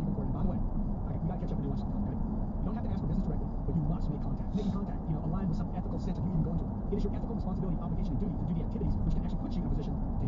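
Steady road and engine noise inside the cabin of a moving car, with an indistinct voice beneath it.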